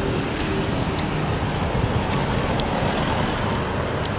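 Steady road traffic noise from passing cars and motor scooters, with no single vehicle standing out.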